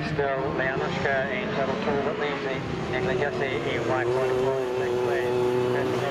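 Autograss race car engines running around a dirt oval, with one engine held at steady revs through the second half as a car comes round the bend.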